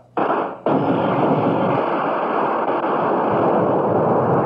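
Radio-drama sound effect of massed gunfire: a short burst, then, under a second in, a continuous volley of many guns firing together at a steady level.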